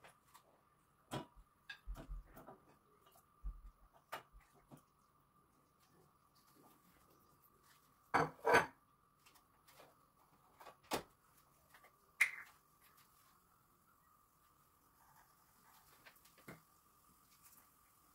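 Scattered knocks and clicks of kitchen handling: raw chicken pieces going into a stainless steel pot on a gas burner, a wooden spoon in the pot, and spice bottles being picked up and opened. The loudest cluster comes about eight seconds in, with a faint steady high tone underneath throughout.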